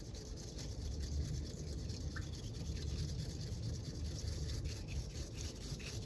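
Bamboo tea whisk brushing rapidly through liquid in a small ceramic bowl: a steady, quick scratchy swishing.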